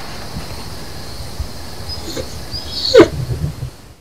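A dog gives a single short bark about three seconds in, the loudest sound here, after a fainter sound a little under a second earlier.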